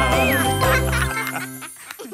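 Closing bars of a children's cartoon song with its backing music. The low bass stops about a second in and the rest of the music fades away near the end.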